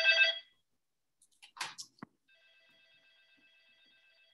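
Electric doorbell buzzer ringing with a steady, fluttering tone. The first ring cuts off about half a second in. After a couple of short knocks, a second, fainter ring starts a little past halfway and runs on.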